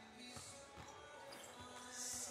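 Faint music with basketballs bouncing on a gym floor, short dull thuds every half second or so.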